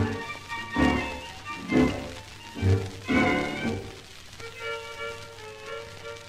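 Argentine tango played by a dance orchestra on a 1946 78 rpm record: accented chords with bass, about one a second, then a softer held melody line from about four seconds in.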